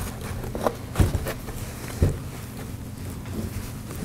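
Handling noise from rubber straps being pulled and fastened around an inspection pole, clamping a battery holster on: a few light knocks and taps, the loudest about one and two seconds in.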